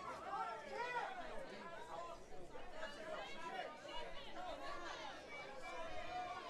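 Voices of cageside spectators and corners calling out during a fight, in a large room with crowd chatter.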